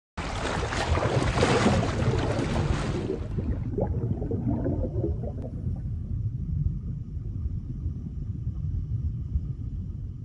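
Water splash and underwater bubbling sound effect for an intro logo: a loud rushing plunge for about the first three seconds, settling into a low underwater rumble.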